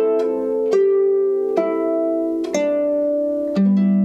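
Lever harp (clarsach) played slowly: plucked notes and chords about once a second, each left to ring into the next, with a lower bass note struck near the end.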